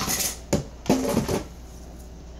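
Groceries being rummaged through in a cardboard box: plastic food packaging crinkles, and items knock and clink against one another in a few short bursts.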